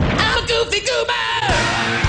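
Loud cartoon soundtrack clip: rock music with a cartoon voice yelling over it. It cuts off suddenly right at the end.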